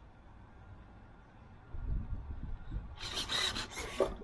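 A quiet start, then a low rumble, then a brief rubbing, scraping noise about three seconds in, as something is handled on the paving.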